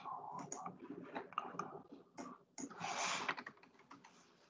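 Typing and clicking on a computer keyboard, irregular keystrokes picked up through a video-call microphone, with a short rush of noise about three seconds in.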